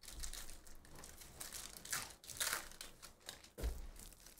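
Foil wrapper of a baseball trading-card pack being torn open and crinkled in the hands: a run of crackling rustles, loudest about two to two and a half seconds in.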